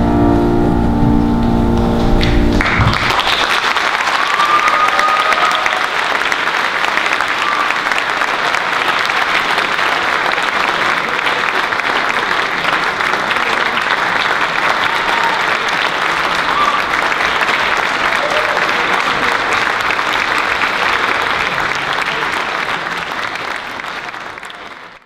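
A held final chord of the song for about the first two and a half seconds, then an audience applauding steadily, fading out at the very end.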